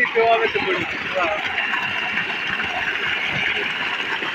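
Water gushing steadily from a 3-inch solar DC tube-well pump's discharge pipe and splashing into a basin on the ground.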